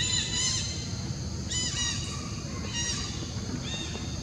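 Short, high-pitched animal calls, several in quick pairs, heard four times over a steady low background rumble.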